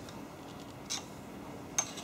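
Two light metal clicks about a second apart, the second sharper, as a screwdriver pries the connecting rod of a small oil-free air compressor pump off its crank against the flywheel.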